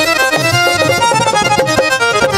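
Instrumental break of a live Punjabi folk stage band, with no singing: a reedy, held keyboard melody over a quick, steady drum beat.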